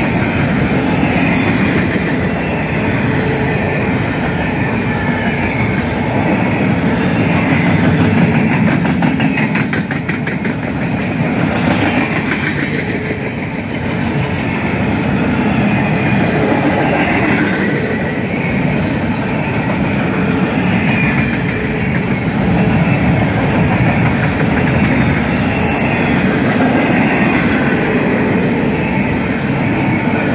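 Empty double-stack well cars of a long freight train rolling past at close range: a steady, loud rumble with a dense run of wheel clicks over the rail joints.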